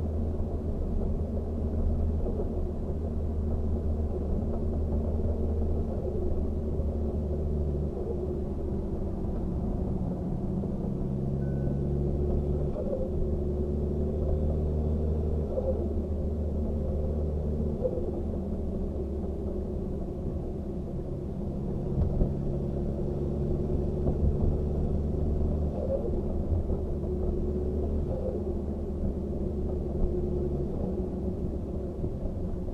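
Kia Sportage (QL) race car's engine and road noise heard inside its cabin: a steady low drone whose pitch steps up and down every few seconds as the revs change.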